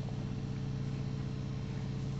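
A steady low hum with a constant pitch, unchanging in level.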